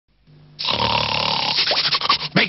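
A dog sniffing hard at the air, scenting food: a long, loud, noisy snuffle starting about half a second in, breaking into quick short sniffs near the end.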